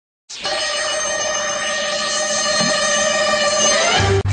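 Intro sound effect under a channel logo: a sustained, bell-like ringing chord that starts a moment in, holds steady and bends slightly upward just before it cuts into the next sound.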